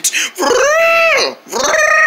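A person's voice imitating an elephant trumpeting: two long, high calls, each rising and then falling in pitch, the second starting near the end.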